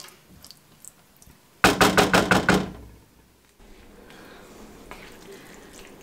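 A wooden spoon knocked rapidly against the rim of a non-stick frying pan: a quick run of about eight sharp knocks lasting about a second. After it comes a faint steady background hiss.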